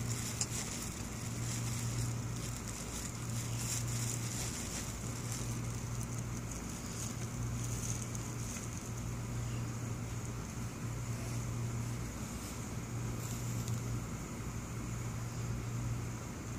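Steady outdoor background noise with a constant low hum and no distinct events.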